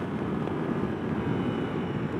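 Steady wind rush and engine running from a Ducati Multistrada V4 Pikes Peak, its 1158 cc V4 Granturismo engine, cruising at about 70 mph in fourth gear.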